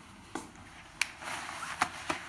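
A few short, sharp taps or knocks at uneven intervals, four in all, the loudest about a second in.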